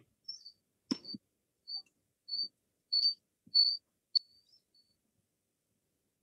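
A small bird chirping: a string of short, high chirps about every half second, growing louder and then trailing off into a fainter chirp, with a soft knock about a second in.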